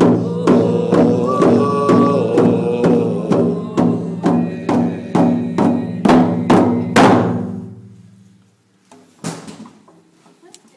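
Hand-held frame drums struck with beaters in a steady beat of about two strokes a second, with voices singing over the first few seconds. The last strokes are accented, the drumming stops about seven seconds in and the drums ring out briefly, and a short burst of noise follows near the end.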